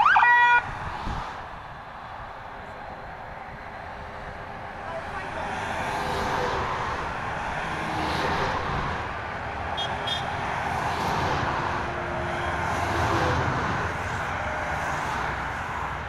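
A loud, short siren whoop rising in pitch at the very start. Then comes the road noise of a military convoy of trucks and trailers passing on the motorway below, swelling and fading as each vehicle goes by.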